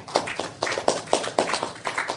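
A small audience clapping, a dense, irregular patter of hand claps.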